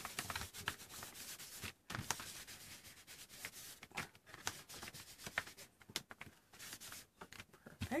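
A damp baby wipe rubbing and dabbing acrylic paint onto paper: a quiet, irregular scuffing and rustling of short strokes.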